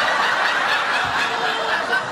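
Studio audience laughing, many voices blending into a steady wash of laughter.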